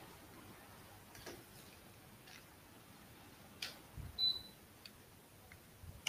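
Quiet room tone with a few faint scattered clicks, and a soft thump together with a brief high chirp about four seconds in.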